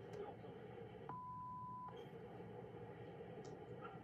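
Faint steady storm noise through a doorbell camera's microphone, broken about a second in by one steady beep lasting under a second. The storm noise cuts out while the beep sounds.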